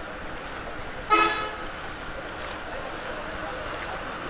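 A single short vehicle horn toot about a second in, clearly the loudest sound, over a steady background wash.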